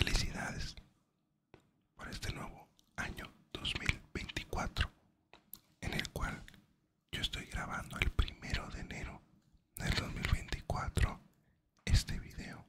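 A man whispering close to the microphone in short phrases with brief pauses.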